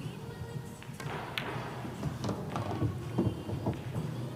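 Pool balls on a nine-ball table: a sharp click about a second in as the cue strikes the cue ball, a louder click as it hits the object ball, then a run of lighter knocks as the balls meet the rails and the object ball drops. Background music plays underneath.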